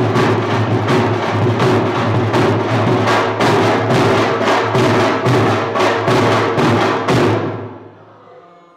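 Two dhols, double-headed barrel drums, played with sticks in a loud, fast, driving rhythm. The drumming stops about seven seconds in and the sound dies away.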